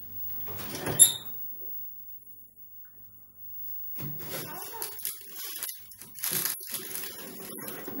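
A sharp metallic clack with a brief ring about a second in, then a quiet gap, then from about halfway a run of clanks and scrapes as a gas cooker's oven door is opened and a metal baking tray is drawn out.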